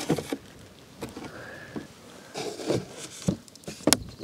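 Spring clamps being handled and fitted onto a wooden target board: scattered light clicks, knocks and rustles, with a sharp click near the end.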